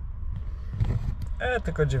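Low, steady rumble of a truck's engine heard inside the cab as it rolls into a parking area, then a man starts speaking in the second half.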